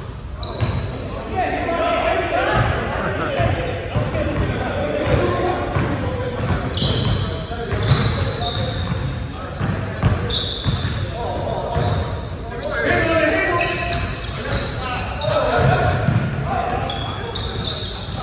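A basketball bouncing and being dribbled on a hardwood gym floor in a pickup game, with players' voices calling out, all echoing in a large gymnasium.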